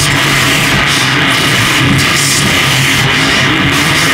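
Harsh noise music: a loud, unbroken wall of dense noise filling every pitch, over a steady low hum, with a high hiss that swells and fades irregularly.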